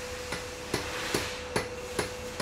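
Cartoon hammering sound effect: about five evenly spaced hammer knocks, two or three a second.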